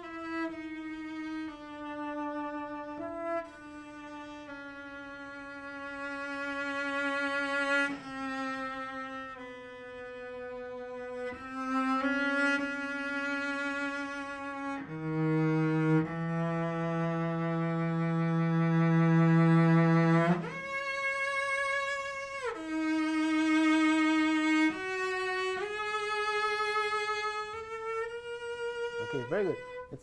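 Solo cello playing a slow melody one note at a time, mostly long held bowed notes, with a long low note about halfway through before the line climbs again.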